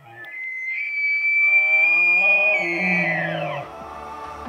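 A bull elk bugling: one long high whistle held for about two seconds, then sliding down in pitch and fading, with a deeper tone sounding beneath it.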